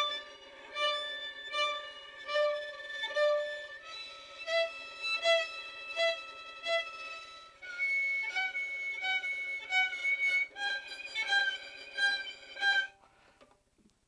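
Violin bowing a held note while a left-hand finger repeatedly flicks from a light harmonic touch down to a firm stop and back, a slow finger-vibrato practice exercise that gives an uneven, pulsing tone and sounds pretty awful. The pulses come a bit faster than once a second, and the note changes pitch three times.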